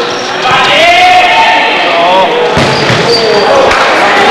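Live futsal match sound in a sports hall: players' shouts over the play, with two sharp knocks of the ball being struck late on.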